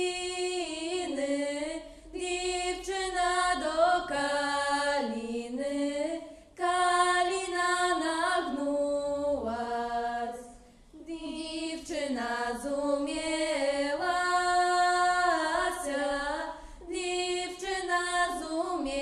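A small group of women singing a folk song unaccompanied in harmony, with long held notes and slides between them, in phrases of about four seconds broken by short breaths.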